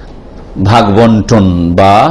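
A man's voice after a brief pause, speaking in long, held syllables at a steady pitch.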